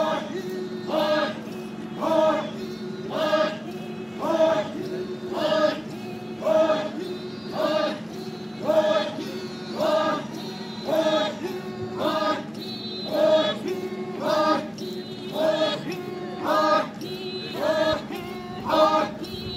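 Chakhesang Naga folk dancers chanting together in chorus, a rhythmic call rising about once a second over a steady low held note.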